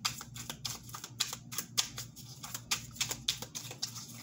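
A tarot deck being shuffled by hand: a quick, irregular run of light card clicks and flicks as the cards slip against each other.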